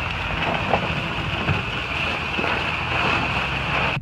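Pickup truck running at low speed while towing a small two-wheeled yard cart, under a steady rushing noise, with a few faint clicks and rattles.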